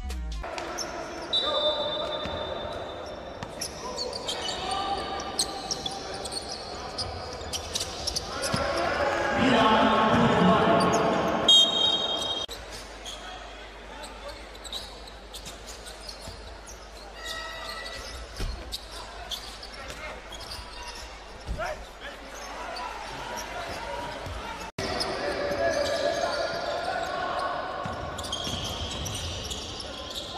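Live game sound of a basketball game in a large hall: the ball bouncing on the court, a few short high sneaker squeaks, and echoing voices of players and spectators, loudest around ten seconds in. The sound jumps abruptly twice where the clips change.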